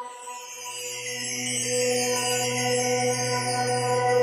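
Ambient meditation music: a steady low drone under several held tones, with a high shimmering wash coming in at the start and swelling over the first two seconds.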